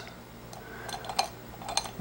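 A Reichert Phoroptor's sphere-lens dial turned by hand, clicking through its quarter-diopter detent steps: a few soft, irregular clicks.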